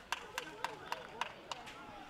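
Open-air soccer match ambience: faint distant voices with about half a dozen sharp, irregular clicks.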